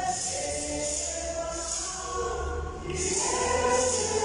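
Church choir singing a hymn with a regular shaken hand-percussion beat, about two strokes a second, that drops out briefly midway.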